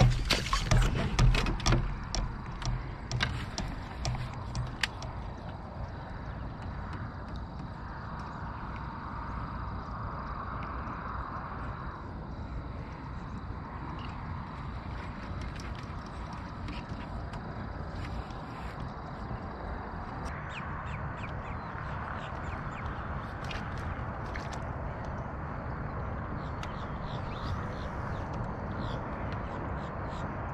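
Open-marsh ambience: birds calling, crow-like caws and duck-like quacks, over a steady hiss. A run of knocks and clicks comes in the first few seconds, then only scattered faint clicks.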